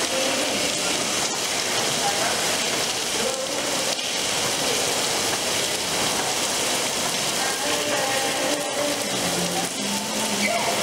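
Indoor waterfall: water running and splashing down a stepped stone wall, giving a steady, even hiss. Faint voices are heard beneath it.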